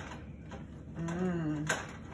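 Wooden spoon stirring a thick, melting marshmallow-and-chocolate mixture in a metal pot, with light clicks of the spoon against the pot, one at the start and one just before the end. A short hummed voice comes in about a second in.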